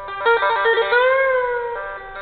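One-string electric diddley bow played with two glass tubes on the string: a quick run of notes tapped out one after another, then a held note that glides up and back down before stepping off again.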